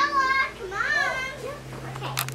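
A young child's high-pitched voice calling out twice, once right at the start and again about a second in, over a faint steady low hum.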